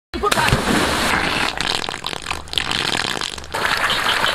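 Water gushing out of a pipe outlet and splashing onto the ground, a loud rushing noise that surges and dips, with brief voices over it.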